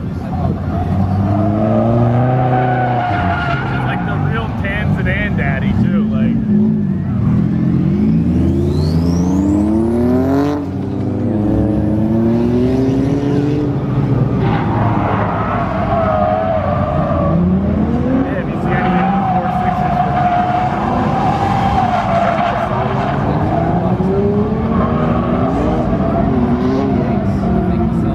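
A Chevrolet Corvette's V8 revving up and down again and again as the car drifts, its tyres squealing and smoking, in loud repeated throttle stabs.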